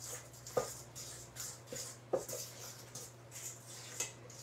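Fork stirring wet biscuit dough in a stainless steel mixing bowl: soft, repeated scraping strokes with a few light clicks of the fork against the metal.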